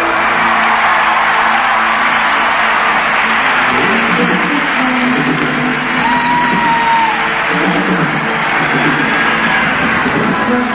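Live concert recording: a large crowd cheering and whooping while the band plays, with sustained instrument notes coming in about four seconds in.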